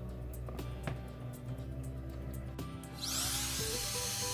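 Background music; about three seconds in, a handheld trim router starts up and runs on steadily, a high-pitched whine over the music.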